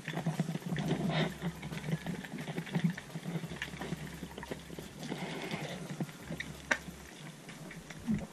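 Underwater ambience heard through a GoPro's waterproof housing: a muffled, steady wash with a low hum and scattered faint clicks and crackles, two sharper clicks standing out about a second in and near the end.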